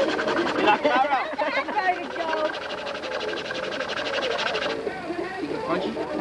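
Several people's voices talking over one another, with a fast, even rattle underneath that stops about five seconds in.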